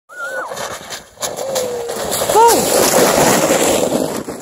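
A sled running into a slushy puddle at the foot of a snowy slope, with a loud rushing splash from about halfway through. People whoop and shout over it.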